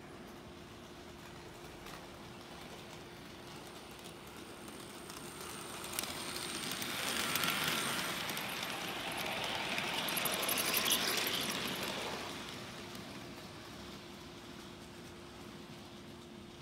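HO-scale model diesel locomotive and short freight train running on sectional track. The rolling clatter and motor whir build as it approaches, are loudest as it passes close by, then fade away, over a steady low hum.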